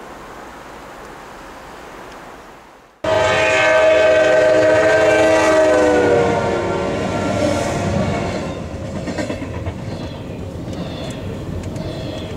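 A Norfolk Southern freight led by GE C40-9W locomotives passing at speed: after about three seconds of steady hiss, a loud multi-tone locomotive air horn cuts in for about three seconds, its pitch dropping as the engines go by. Then the rumble and clatter of intermodal cars rolling past.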